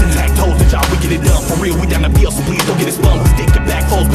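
Live hip-hop performance through a club sound system: a beat with long, heavy bass notes and regular drum hits, with rapping over it.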